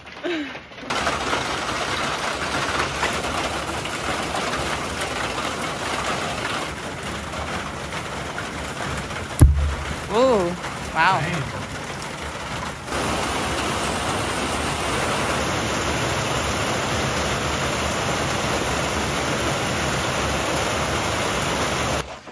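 Heavy, steady rain falling, with one sharp knock about nine seconds in and a quieter stretch of a few seconds after it before the rain comes back in full.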